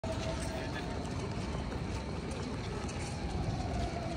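Busy city-square ambience: a steady low rumble with a faint steady hum above it.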